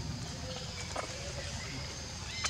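Faint brief squeaks of a young macaque over a steady low rumble, with a few light clicks.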